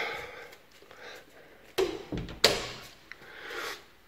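A light switch clicks off, then about two seconds in come two sharp knocks, the second the loudest, and some handling noise from an interior door being opened.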